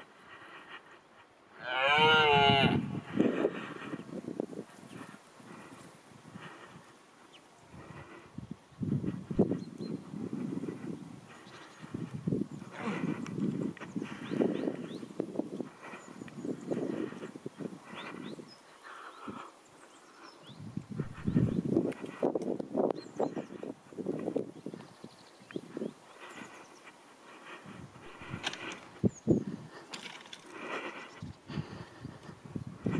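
Red deer stag roaring in the rut: one loud, wavering bellow about two seconds in, followed by quieter irregular sounds.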